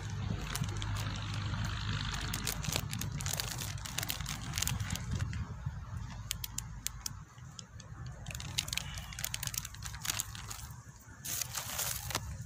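Plastic bait packets crinkling and crackling as they are handled and opened for dry groundbait powder, in irregular sharp clicks throughout, over a low steady rumble.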